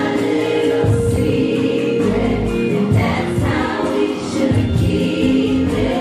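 Live R&B concert music: a woman singing into a handheld microphone over a band with drums, other voices blending in.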